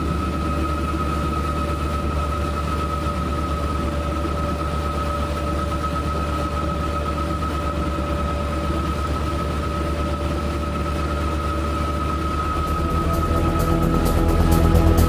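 Motorboat engine running at a steady speed: a low hum with a steady high whine over it. Near the end, music with a regular beat comes in and grows louder.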